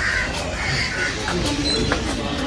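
Crows cawing several times over steady outdoor background noise.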